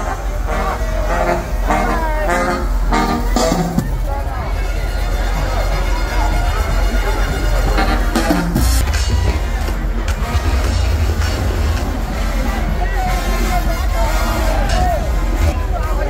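Loud second line parade music with heavy bass and a strong drumbeat for the first few seconds, mixed with the talk and calls of a large crowd walking along with it.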